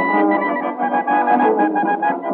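Wind band playing a dobrado, a Brazilian march, from a 1913 acoustic-era 78 rpm disc: sustained chords with no deep bass and little treble.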